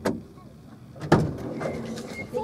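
A vehicle door bangs once about a second in, a single loud thump that dies away quickly.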